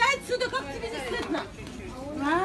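Speech: a woman talking, high-pitched and broken into short phrases.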